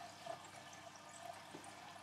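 Near-silent room hiss with a soft click about a third of a second in and a fainter one near the end: photo cards and artwork being handled at a plastic Blu-ray case.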